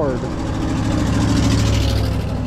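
Wind and road noise from an electric bike riding at speed just after a hard acceleration under hub-motor power, with a steady low hum under a hiss that grows through the middle.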